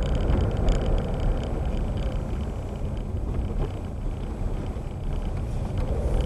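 A car driving slowly, heard from inside the cabin: a steady low engine and tyre rumble, easing off slightly in the middle and picking up again near the end.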